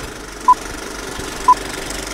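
Film-leader countdown sound effect: two short high beeps, a second apart, one per number, over a steady rattling film-projector noise with crackle.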